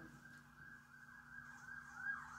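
Faint emergency-vehicle siren, its pitch sweeping up and down in a fast repeating wail, several sweeps a second.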